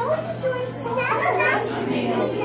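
Young children's voices talking, the words unclear, over a steady low hum.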